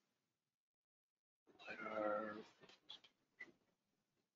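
A brief drawn-out vocal sound lasting about a second, starting after a stretch of silence, followed by a couple of faint clicks.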